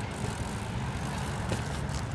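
BMX bike tyres rolling on asphalt, a steady low rumble, with a faint tick about one and a half seconds in.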